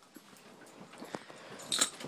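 Scattered light clicks and rustling from things being handled, with a louder, brief crackling rustle near the end.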